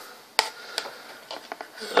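A few clicks and light taps from a mains power cord and plug being handled: one sharp click about half a second in, another a moment later, then fainter taps.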